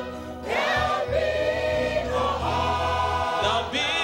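Large mixed choir of men and women singing a gospel hymn in harmony over a low bass accompaniment. The voices drop away briefly at the start, then come back in on a rising note, with a short breath break near the end.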